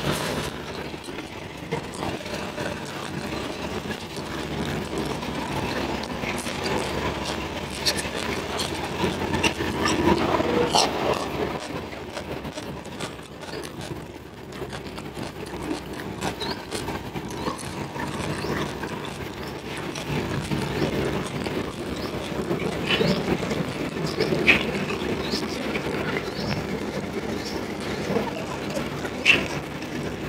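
Close-miked eating sounds: chewing raw red tilapia, with kitchen scissors snipping slices from the fish and food being handled, scattered with short clicks.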